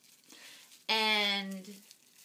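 A woman's voice holding a drawn-out wordless 'um' for about a second, from a second in, with faint crinkling of bubble wrap being wound around the wand.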